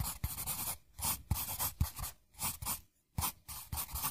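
Intro sound effect of a pen writing on paper: an irregular run of short scratchy strokes, two or three a second, with a brief pause about three seconds in.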